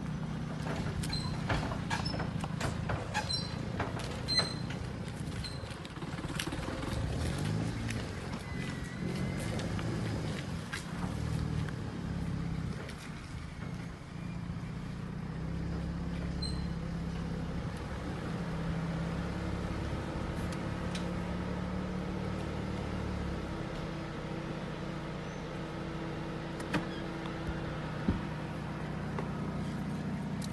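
Car engine running at low speed as the car rolls slowly over a dirt yard, heard from inside the cabin: a steady low hum, with scattered clicks and knocks in the first few seconds.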